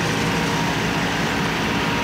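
Jacto K3000 coffee harvester running at work, its Yanmar engine giving a steady low drone over an even machinery noise.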